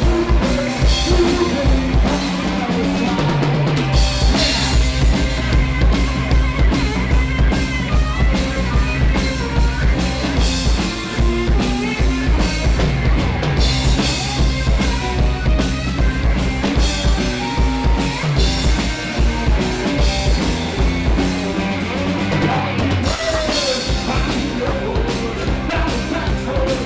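Live rock band playing an instrumental passage, with a drum kit's bass drum and snare driving a steady beat under electric guitar.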